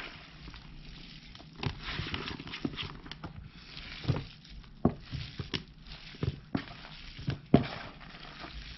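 Hands digging through and breaking up soaking-wet worm castings in a plastic bin. There is soft rustling with scattered sharp clicks and crackles, the sharpest about three-quarters of the way through.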